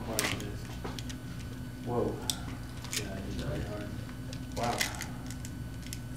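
A few short exclamations, "whoa" and "wow", over a steady low room hum, with scattered small sharp clicks and handling noises in between.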